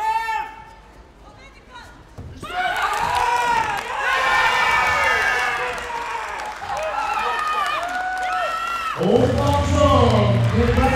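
Arena crowd cheering and shouting, many voices at once, breaking out suddenly about two and a half seconds in after a quieter stretch.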